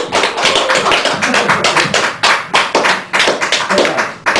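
A small audience applauding at the end of a song, with many individual handclaps distinct and irregular.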